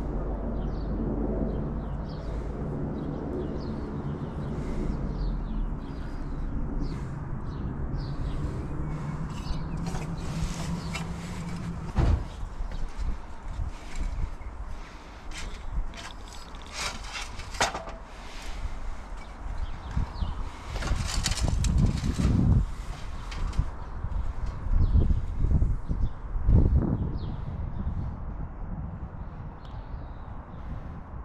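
A steady low hum for the first dozen seconds. Then irregular knocks and rattles as an aluminium ladder is carried and handled, with the loudest clatter in the last third.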